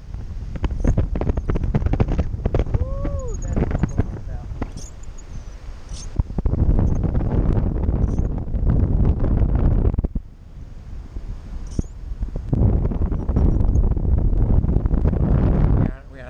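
Wind rushing over an action camera's microphone in paraglider flight, a loud low rumble that surges and eases, dropping off for a couple of seconds about two-thirds of the way in before coming back.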